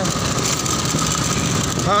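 Steady engine and road noise from a motorcycle being ridden along a street, an even rumble with no sudden changes.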